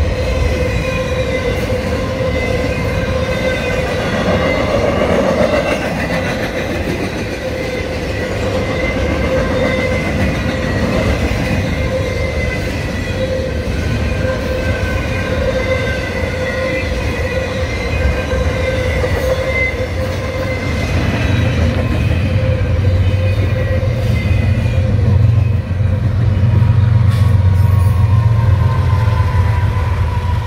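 Loaded double-stack intermodal freight cars rolling past on the rails: a steady rumble with a high, steady ringing squeal held over it. In the last few seconds a deeper diesel locomotive throb comes in as BNSF locomotives approach.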